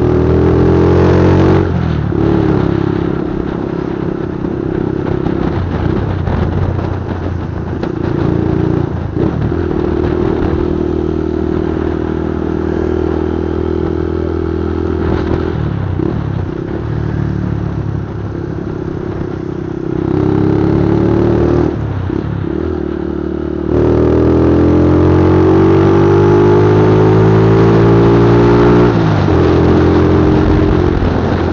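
Motorcycle engine heard from the rider's seat, pulling away and easing off through several gear changes. The pitch climbs in steady pulls, the longest near the end before a shift.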